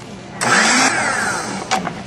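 Food processor pulsed once: the motor starts suddenly about half a second in, its whine falling in pitch for about a second before it cuts off, as it blends the mashed-potato mixture until smooth.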